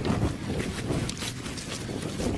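Wind buffeting the microphone of a handheld camera, with rustling and handling knocks as the camera is swung about.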